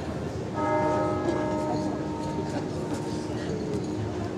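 A bell struck once about half a second in, its ring holding and fading over a couple of seconds, over the murmur of a crowd.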